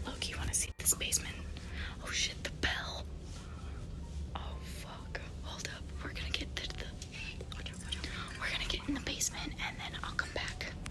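A girl whispering close to the microphone in a hushed, breathy voice, over a low steady hum.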